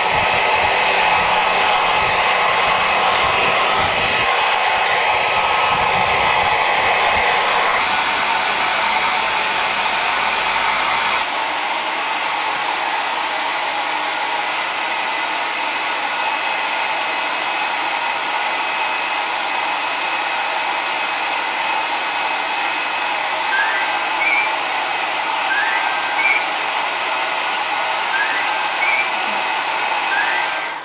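Hair dryer blowing steadily, a continuous airy rush with a whine. Its low rumble drops away about eleven seconds in, and a few short rising chirps sound over it near the end.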